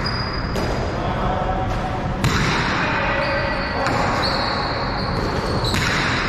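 A jai alai pelota striking the fronton walls and floor during a rally: three sharp cracks, each ringing on in the big echoing court.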